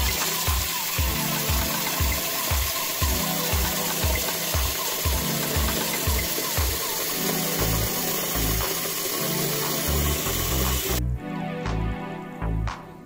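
Background music with a steady beat over a kitchen tap running into a pot of rice as it is rinsed. The hiss of the running water cuts off suddenly about eleven seconds in, leaving only the music.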